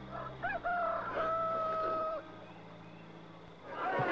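A rooster crowing once: a couple of short rising notes, then one long held note that stops about two seconds in, over a steady low hum.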